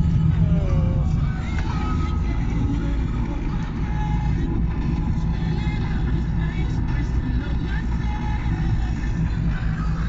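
Steady low road and engine rumble inside a moving car's cabin on a wet road, with music with a voice playing more quietly over it.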